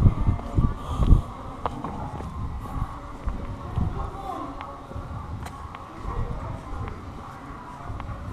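Open-air ambience with faint, unintelligible distant voices and a few sharp clicks, with low thumps on the microphone in the first second or so.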